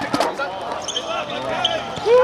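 A futsal ball kicked and bouncing on a hard court, with a sharp kick near the start, while players call out.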